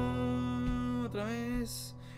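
Synthesizer keyboard playing sustained chords from the song's piano solo, moving to a new chord about a second in.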